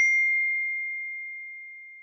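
A single high, bell-like chime ringing out after one strike and fading away slowly, one clear tone with faint higher overtones.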